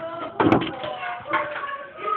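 A sharp thump about half a second in and a softer one just after a second, over faint voices.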